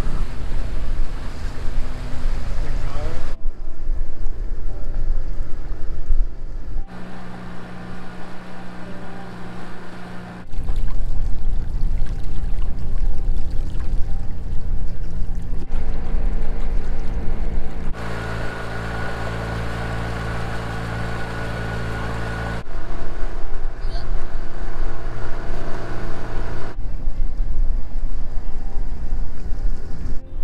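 A boat's engine runs steadily as the catamaran motors through open water, with water rushing past the hull and wind on the microphone. The mix changes abruptly several times.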